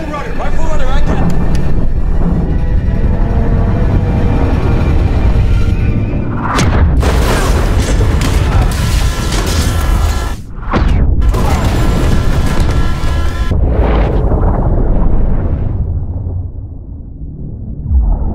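Film sound mix of underwater torpedo explosions: heavy, continuous booming and rumbling as the blasts shake the submarine, under a dramatic score. The biggest bursts come about six seconds in and again from about eleven to thirteen seconds, with a brief drop between them, and the rumble fades near the end.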